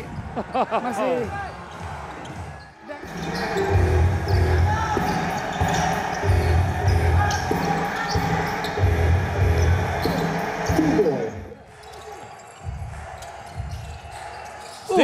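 A basketball being dribbled on a hardwood court, with music playing underneath from a few seconds in until near the end.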